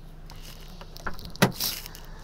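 Handling noise inside a car cabin: soft rustles and small clicks, with one sharp click about a second and a half in followed by a brief rustle, over a low steady hum.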